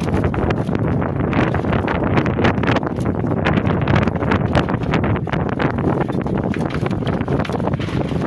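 Wind buffeting the microphone, over an irregular clatter of knocks and slaps as live tilapia are tipped from one plastic crate into another and flap against the plastic.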